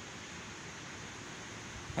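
Steady faint background hiss with no distinct sound in it.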